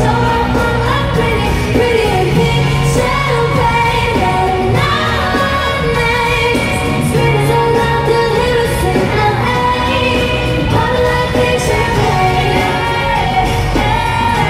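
Live pop music in a large arena: a female lead vocalist sings over the band and backing track, with a steady beat and bass underneath.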